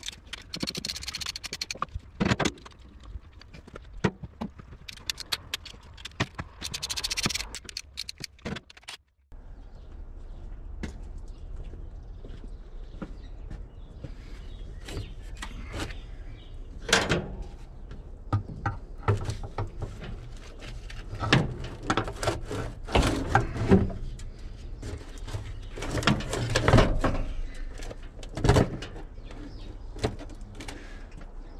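Irregular metal clinks, knocks and scrapes of tools and engine parts being handled during an engine teardown, over a low steady background noise. The sound drops out briefly about nine seconds in, and the strikes come thicker and louder in the second half.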